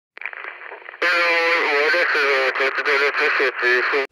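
A voice with a radio-like, narrow sound, faint at first and much louder from about a second in, its pitch held and wavering.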